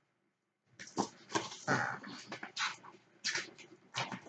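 Pages of a paperback book being turned and flipped by hand: a quick series of short papery rustles starting about a second in.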